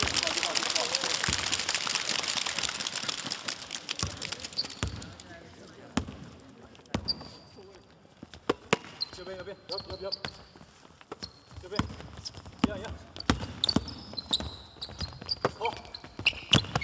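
A basketball being dribbled on a hardwood gym floor, with sharp bounces and short high sneaker squeaks. A loud burst of crowd noise fills the first few seconds.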